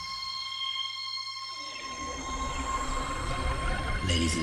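Beatless electronic drone in a hardcore DJ mix: several steady high synth tones held with no drums or bass, a breakdown between tracks. About halfway through a low rumble and wavering, gliding tones creep back in.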